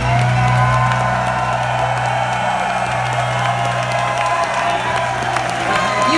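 A live pop band holding one sustained chord over a steady bass note, with a concert crowd cheering and whooping.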